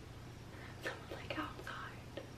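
A woman whispering briefly and faintly, over a steady low hum of room tone.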